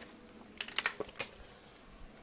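A corded landline telephone being handled: a quick run of about five or six sharp clicks a little over half a second in, lasting under a second.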